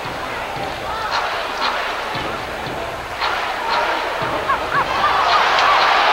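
Arena crowd noise during play in an indoor soccer game, with scattered shouts and a few short sharp knocks of the ball. The crowd gets louder about five seconds in as play breaks forward.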